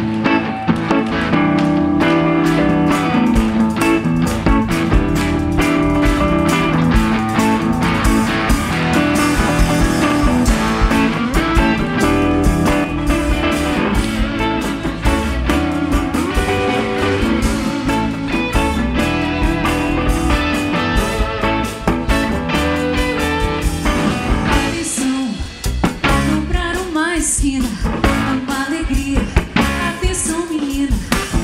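Live band playing the instrumental intro of an MPB rock song: an Ibanez electric guitar plays over rhythm guitar, bass and drum kit. Near the end the low end thins out for a few seconds before the full band comes back.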